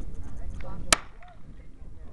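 A single sharp crack about a second in, a starter's pistol firing to start a 100m dash, over background crowd chatter.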